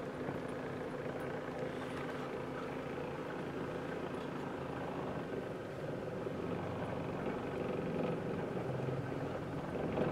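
Car engine and road noise heard from inside the cabin while driving slowly, a steady hum. About six seconds in, the engine note shifts and grows slightly louder.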